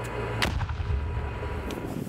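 A round exploding on impact: a sharp blast about half a second in, then a long, deep rumble, with a lighter crack near the end.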